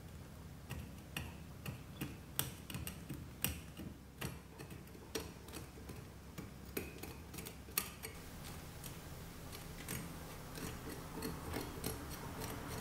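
Small metal pick scratching and picking through bonsai soil and roots: irregular small clicks and scrapes, a few a second, some louder than others.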